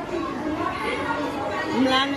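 Indistinct speech and chatter of people in a large, echoing hall.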